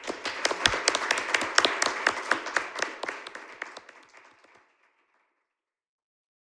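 Audience applauding in a lecture hall, many hands clapping together, then dying away about four seconds in.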